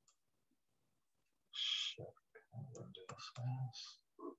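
Clicking mixed with brief muffled vocal sounds, starting about a second and a half in after near silence.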